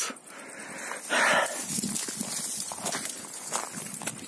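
Footsteps on a dry dirt trail, with dry brush rustling: a louder crunch about a second in, then smaller irregular steps and rustles.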